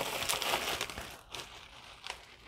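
Packaging handled and shifted on a tabletop: a rustle lasting about a second, then a few smaller rustles and taps.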